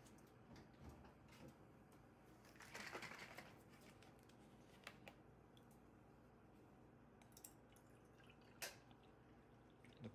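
Near silence with faint handling sounds from a milk carton: a brief rustle about three seconds in and a few light clicks. Near the end, milk starts pouring into a stainless steel milk pitcher.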